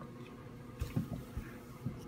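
Faint handling noises: a soft rustle and a few light taps about halfway through, as a small plastic toy figure and its blind-bag packaging are handled.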